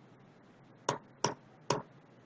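Three separate computer keyboard key presses, short sharp clicks a little under half a second apart, deleting characters from a text field one at a time.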